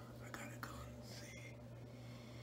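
Faint whispering voice over a steady low hum, with a couple of soft clicks.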